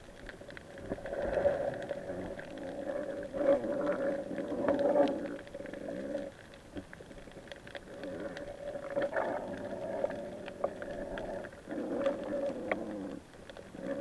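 Muffled underwater sound through an action camera's waterproof housing, swelling and fading every few seconds over a steady low hum.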